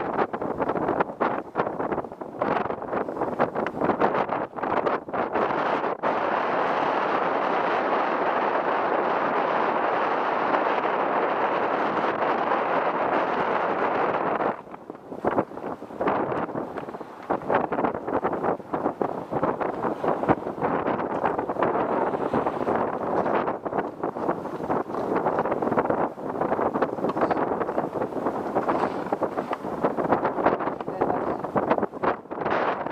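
Strong wind buffeting the microphone: a loud, steady rushing noise that drops out sharply about halfway through, then comes back in uneven gusts.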